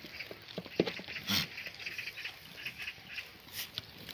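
A single short animal call about a second and a half in, amid scattered light clicks.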